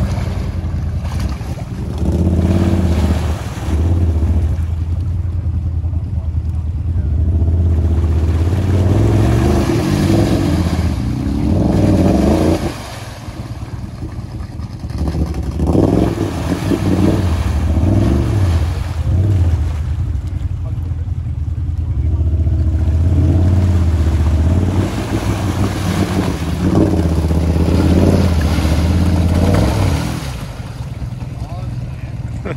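Side-by-side UTV engine revving hard as the machine churns through a deep mud and water hole, the engine note rising and falling repeatedly and easing off briefly a little before halfway.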